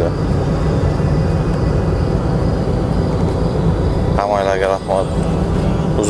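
Steady low rumble of a car being driven, heard from inside the cabin: engine and road noise. A man's voice comes in briefly a little after four seconds in.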